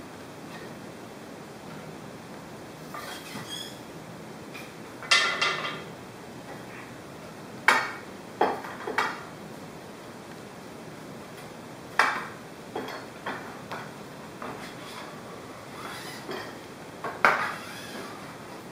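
Intermittent sharp knocks and clinks of wooden dowel rods and quarter-round strips being handled against the aluminium extrusion of a homemade mesh-stretching frame, about eight in all, the one about five seconds in ringing briefly.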